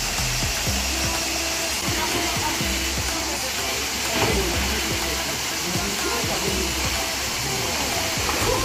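Steady rush of a small waterfall pouring into a pool, with music and faint voices underneath.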